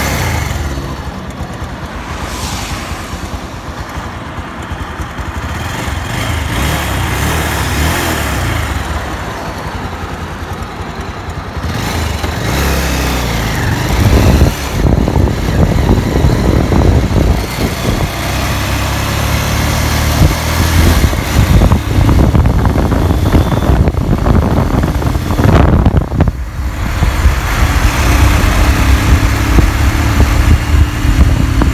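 Motorcycle engine running at road speed with wind buffeting the microphone; the buffeting grows louder and choppier from about halfway through.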